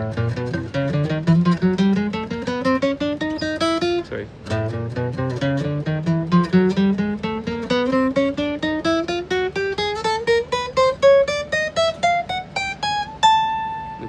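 Acoustic guitar picking an ascending chromatic scale one semitone at a time, starting from A. A first run breaks off about four seconds in; a restart climbs steadily through three octaves, about four notes a second, and ends on a held high A.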